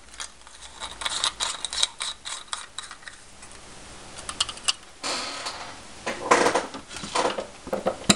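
Plastic clicking and rattling of an opened LED bulb's housing and circuit board as it is handled and screwed into a lamp socket, with louder scraping and rubbing in the second half.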